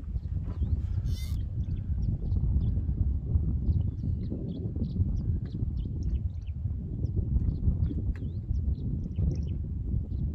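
Wind buffeting the microphone outdoors, a steady low rumble, with scattered faint high chirps and one brief sharp sound about a second in.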